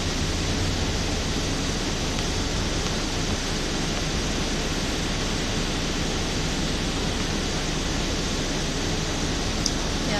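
Steady rushing noise inside a vanity van's cabin, with a low hum underneath, holding even throughout. A small click comes near the end.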